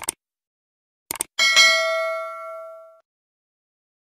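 Subscribe-button animation sound effect: a mouse click, then two quick clicks about a second in, followed by a notification-bell ding that rings with several tones and fades out over about a second and a half.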